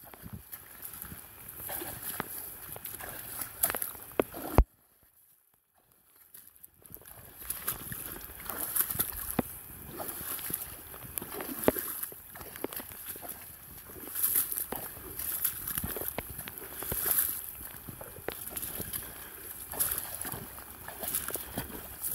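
Knee-high rubber boots sloshing and squelching step by step through mud and shallow water, with dry marsh grass brushing against them. The sound cuts out for about two seconds roughly five seconds in, then the sloshing steps carry on.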